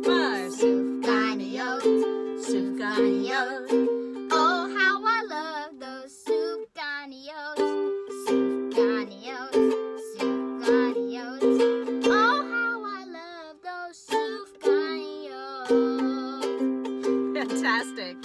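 Ukulele strummed in a steady rhythm, playing chords as the introduction to a song after a spoken count-in, with a wavering melody line over the chords.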